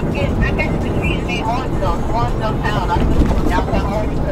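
Steady low rumble of a car's engine and road noise heard inside the cabin while driving, with a voice talking over it.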